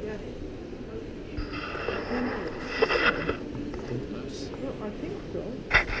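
Indistinct chatter of visitors' voices in a gallery, with a higher-pitched sound standing out for about two seconds in the middle and a short click near the end.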